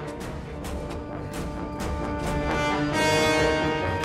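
Orchestral film score with sustained chords and a string of sharp hits about twice a second.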